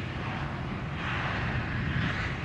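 Steady in-flight noise inside an airliner: the drone of engines and airflow around the fuselage, growing a little brighter about halfway through.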